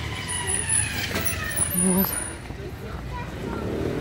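Street traffic going by on the road next to the pavement, with one vehicle passing: a whine that falls slowly in pitch over about two seconds, over a steady low rumble.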